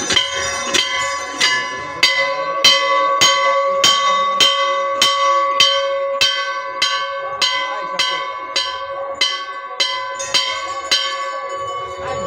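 Hindu temple bell rung over and over at the sanctum entrance, about one and a half strikes a second, its ring carrying on between strikes.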